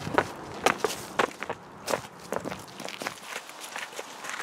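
Footsteps of two people walking over ground covered in dry autumn leaves and grit, about two crunching steps a second, louder in the first second or so.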